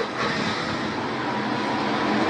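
Steady rushing background noise, even and unbroken, of the kind made by outdoor traffic.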